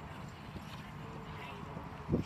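Horse's hooves clip-clopping, with voices talking in the background.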